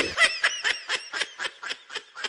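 Laughter: a rapid string of short, breathy snickers that fade away.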